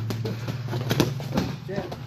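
Boxing gloves landing during close-range sparring: a rapid series of short punch thuds, the loudest about a second in, over a steady low hum.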